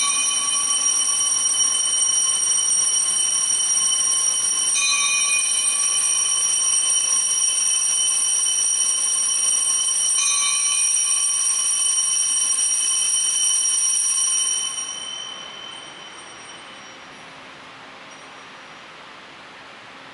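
Altar bell rung at the elevation of the consecrated chalice: a loud, steady, high ringing that is struck afresh about 5 and 10 seconds in, three rings in all, then fades away about 15 seconds in.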